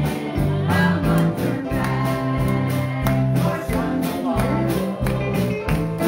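Live country-gospel song: women's voices singing over strummed acoustic guitars and piano, with a steady, even-paced bass line under it.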